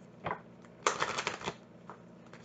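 A deck of tarot cards shuffled by hand: a short rustle about a quarter second in, then a quick run of cards flicking and riffling for about half a second, ending in a faint tick near the end.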